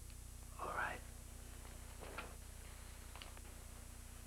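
A man's soft, breathy vocal sounds, like a sigh or whisper, twice: a rising one about half a second in and a shorter one around two seconds. A steady low hum runs under it.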